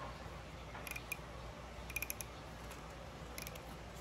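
Faint clicks of the POC Ventral Air Spin helmet's retention-system dial being turned by hand, in three short clusters about a second apart.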